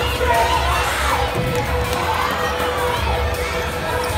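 A crowd of children shouting and cheering, many voices overlapping at once. A steady tone runs underneath.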